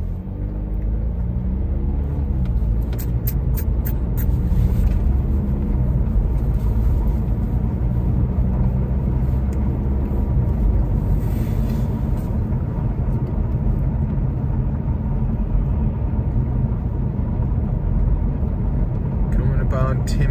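Car driving, heard from inside the cabin: a steady low rumble of engine and road noise, the engine note climbing over the first couple of seconds as the car picks up speed. A short run of light clicks comes about three seconds in.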